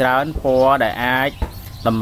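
A person's voice talking, its pitch rising and falling in long sweeps.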